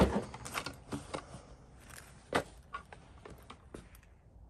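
Footsteps and scattered light knocks and taps as a plastic 5.7 Hemi intake manifold is carried and handled, with one louder knock a little past halfway.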